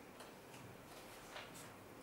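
Near silence: faint background hiss with a few soft, scattered ticks.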